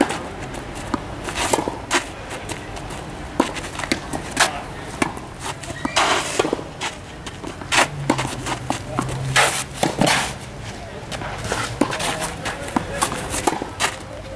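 Tennis balls struck by racquets and bouncing on a clay court, heard as an irregular series of sharp hits, at times several a second.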